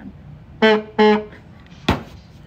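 Two short, loud honks of the horn built into a novelty drinking tumbler (The Loud Cup), each about a third of a second at one steady pitch, blown by mouth. A single sharp knock follows near the end.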